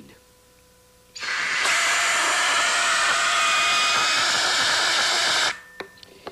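Compressed air hissing steadily from an air-hose nozzle into a glass funnel, starting suddenly about a second in and cutting off sharply some four seconds later. The blast fails to blow the ping-pong ball out of the funnel: the fast-moving air lowers the pressure around the ball and holds it in (Bernoulli's principle).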